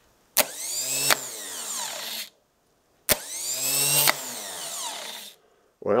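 Rebuilt 1977 BMW R100RS starter motor run twice on the bench off a battery. Each time it starts with a sharp click, spins for under a second, gives another click when it is switched off, and then falls in pitch as it coasts to a stop. It seems to be working correctly.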